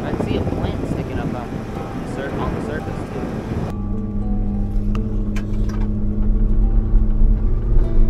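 Rushing wind and road noise from a Jeep Wrangler driving a gravel trail. About four seconds in it gives way abruptly to the steady low drone of the Jeep's engine and drivetrain, which grows slowly louder.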